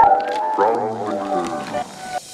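Electronic bass-music intro: sliding, pitch-bending synth tones that sound howl- or voice-like, thinning out and getting quieter toward the end.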